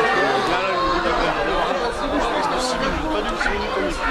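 Many people talking at once: overlapping chatter of a group of voices, with no single speaker standing out.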